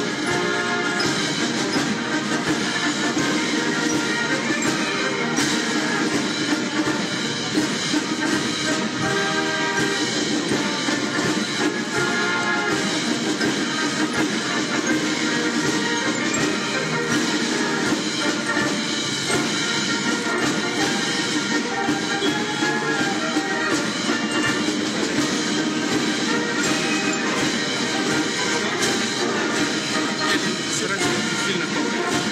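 Military brass band playing at an outdoor ceremony.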